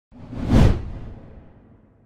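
A single whoosh sound effect with a deep low rumble under it. It swells to a peak about half a second in, then fades away over the next second and a half.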